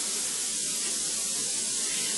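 Steady high hiss: the background noise of an old video recording.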